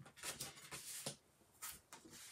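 Faint rustling and sliding of card stock and patterned paper being handled and laid down on a work mat, in a few short brushes.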